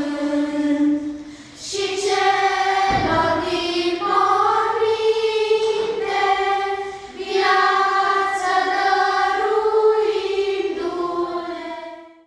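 Children's choir singing unaccompanied in long held notes, with short breaths about one and a half and seven seconds in. A brief low thump about three seconds in, and the singing fades out at the end.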